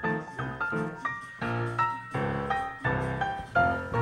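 Background music: a light jazzy tune with piano-like notes and a pulsing bass line.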